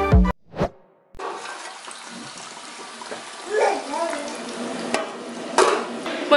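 Background music cuts off just after the start; after a short gap, a steady hiss of water running in a shower in another room, with a faint voice partway through.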